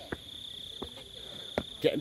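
Insects trilling steadily on one high, continuous tone, with a few faint ticks.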